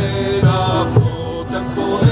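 Early-music folk band playing: a large wooden-shell drum beating about twice a second under harp, plucked lute and bowed fiddle, with men's voices singing a held, chant-like line.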